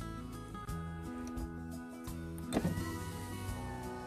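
Nissan Elgrand's electric front window motor running, a thin whine that starts with a click about two and a half seconds in and sinks slowly in pitch as it goes, over background music.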